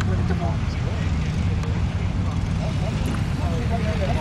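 Off-road Jeep engine running low and steady as the Jeep crawls over a dirt mound, with faint voices in the background.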